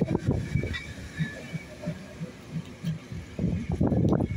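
Passenger coaches rolling past at low speed, their steel wheels thumping rhythmically over rail joints. The clatter grows louder near the end as a group of wheelsets passes.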